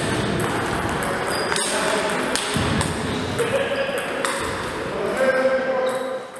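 Table tennis ball clicking sharply off the rackets and the table in a rally, the hits ringing in a gym hall, with voices talking underneath.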